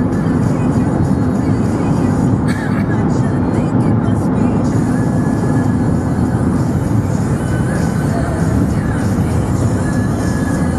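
Car radio playing a pop song with vocals, heard inside a moving car over steady road and engine noise.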